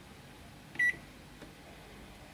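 A convection microwave oven's control panel beeps once, a short high electronic beep as a button is pressed, a little under a second in.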